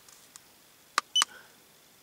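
A button press on an iCarSoft i910 handheld diagnostic scanner: a sharp click about a second in, followed at once by the scanner's short, high key beep as it pages through the stored fault codes.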